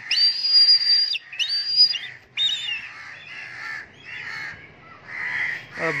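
Black kite calling with high, thin whistles: two long held whistles that each drop at the end, then shorter falling ones. Crows caw in the background, louder near the end.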